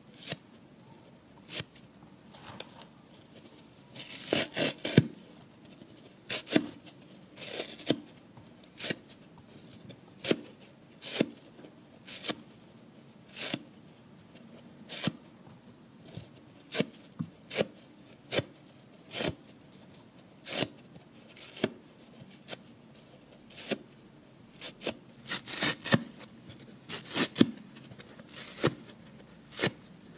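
Dry soft-side kitchen sponge being torn apart by hand, a short crisp ripping crackle about once a second, with quicker runs of several tears together a few times.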